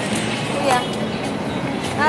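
Street traffic noise, a steady vehicle rumble, with indistinct voices.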